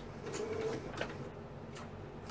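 Computerised Janome sewing machine stitching slowly: a faint motor hum in a short run, with a few separate clicks.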